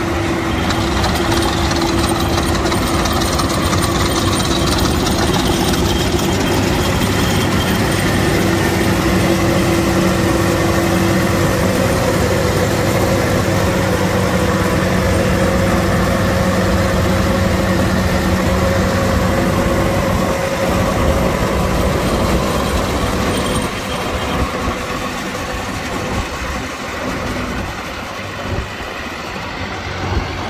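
Diesel engine of a 1981 Gleaner F2 combine idling steadily, with a constant hum of several steady tones. It gets a little quieter for the last several seconds.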